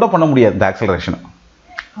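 A man speaking, trailing off after about a second, then a short pause with one sharp click near the end.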